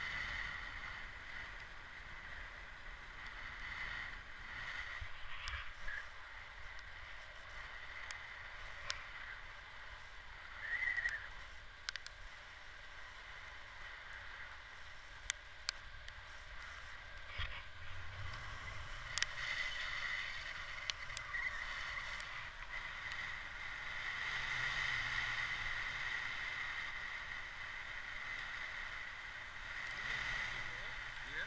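Wind rushing past the microphone during a paragliding flight, with a steady high-pitched whistle and a low rumble, and a few sharp clicks scattered through it.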